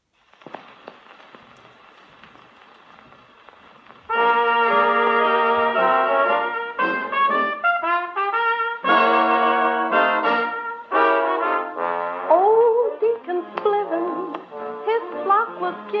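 EMG Mark Xa acoustic gramophone with an HMV No. 5A soundbox: the needle set down on a 78 rpm shellac record with a soft thump, a few seconds of surface hiss from the lead-in groove, then about four seconds in a Dixieland jazz band starts the introduction, trumpet and trombone leading, with trombone slides near the end.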